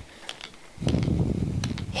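Handheld spray bottle of alcohol and gold mica powder in use close to the microphone: a few light clicks, then a rough, rattly, low-pitched noise lasting about a second as the gold is sprayed on.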